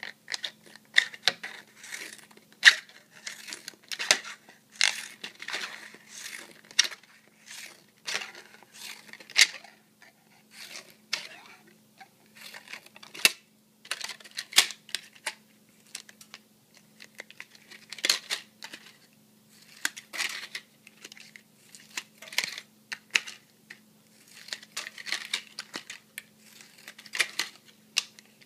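Scissors snipping through a plastic Evian water bottle, cutting it into strips: many sharp, irregular snips and clicks, with the plastic crinkling as it is handled. A faint steady low hum runs underneath.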